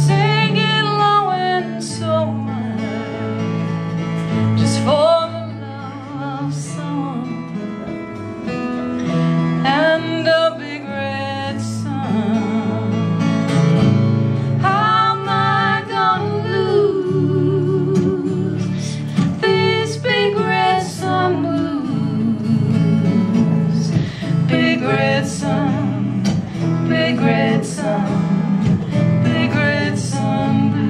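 Live acoustic folk/country song with women singing over strummed and picked acoustic guitar. The sung lines come in phrases every few seconds over a steady guitar accompaniment.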